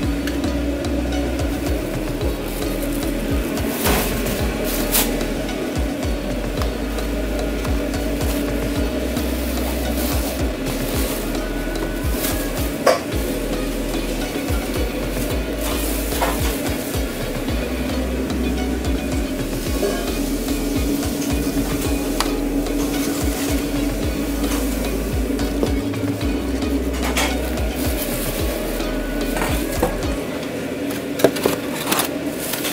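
Food-truck kitchen at work: food sizzling as it fries, over a steady hum, with scattered clicks and clatter of utensils and dishes.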